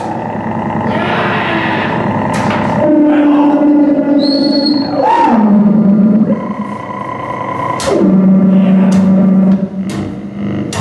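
Improvised noise music from a double bass and electronics run through effects: held, distorted tones that swoop down in pitch and settle low, a brief high whistling tone about four seconds in, and scattered sharp clicks.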